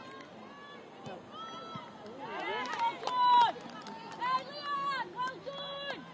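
High-pitched women's voices shouting and cheering at a goal in a football match. The yells are loudest about three seconds in, with another burst of shouts near the end.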